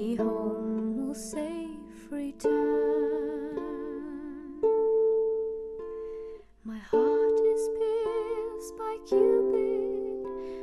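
A 19-string Celtic harp playing plucked notes and chords in D minor, with new notes struck roughly every two seconds and left to ring, under a soprano voice holding long sung notes with vibrato.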